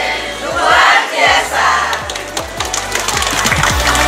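A group of women cheering and shouting together, then clapping, over background electronic music whose kick drum beats come faster toward the end.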